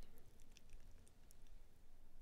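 Near silence: quiet room tone with a few faint, sparse clicks.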